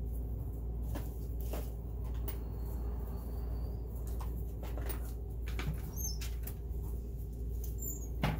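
Scattered small clicks and rustles, irregular and a few per second at most, over a steady low hum.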